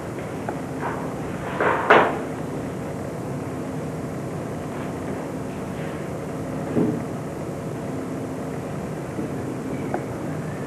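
A large black board is handled and set up on a folding table, with a few knocks and thumps, the loudest just under two seconds in and another near seven seconds. A steady low hum sounds underneath.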